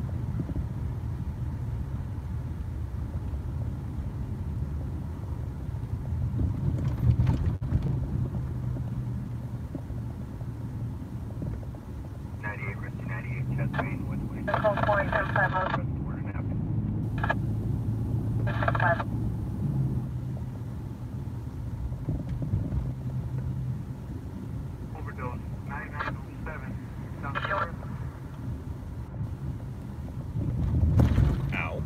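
Steady engine and road noise heard from inside a moving car's cabin. Short bursts of police scanner radio chatter come in about halfway through and again near the end.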